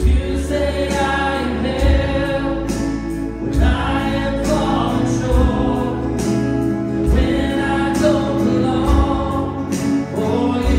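Congregation singing a worship song together with a live church band, with many voices over guitar and drums and a low drum beat about every two seconds.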